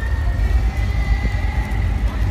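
Busy city street ambience: a heavy, fluctuating low rumble of traffic and outdoor noise, with faint steady high tones over it.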